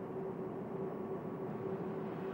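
Steady machinery hum: one constant droning tone over an even rushing noise, with no change through the moment.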